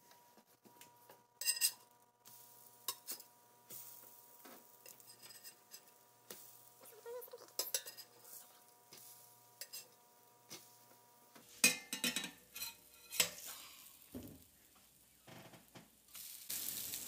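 A metal spatula scraping and clinking against a stainless steel electric skillet as pancakes are flipped, in scattered short knocks. A faint steady tone runs underneath and stops about eleven seconds in.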